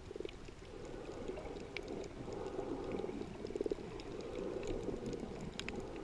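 Muffled underwater sound picked up by a submerged camera: a low, even rush of moving water with scattered faint clicks and a brief fluttering sound twice.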